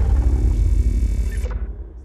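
Deep rumbling tail of a cinematic boom sound effect from an animated logo intro, fading out; the higher hiss over it cuts off about one and a half seconds in.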